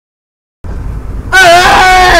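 Dead silence for about half a second, then car cabin road noise, with a loud, high held note coming in a little past halfway that wavers and slides down steeply at the end.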